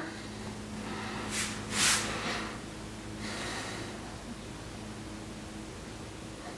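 A person breathing out sharply through the nose twice, about one and a half and two seconds in, over a faint steady hum.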